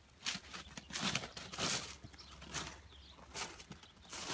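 Footsteps crunching on beach gravel, about two steps a second, as the person holding the phone walks.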